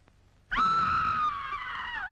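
A woman's high-pitched scream of terror. It starts about half a second in, holds for about a second and a half while sliding slightly down in pitch, then breaks off.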